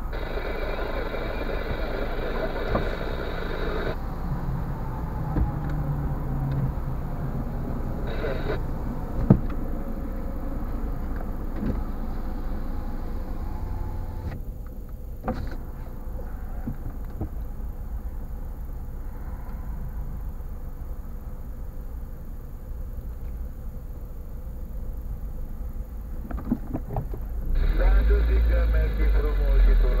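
Car engine idling, heard from inside the cabin as a steady low hum. There is a sharp click about nine seconds in, and the engine grows louder near the end as the car pulls forward.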